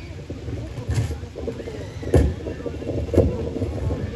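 Drum kit playing slow, regular beats about once a second through a stage sound system, each hit a deep thud.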